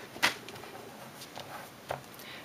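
Quiet handling of a paper card: a sharp tap about a quarter second in, a few faint ticks, and a soft knock near the end as the card is laid flat on the paper.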